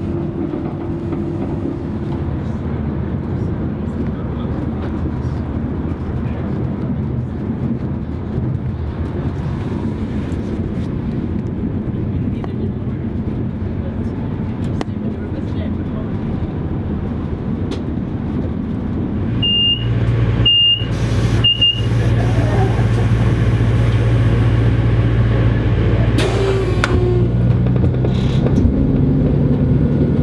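Class 221 Voyager diesel train running with a steady low rumble. About two-thirds of the way in there are three short high beeps, then a louder steady low diesel engine hum as the train stands at a station.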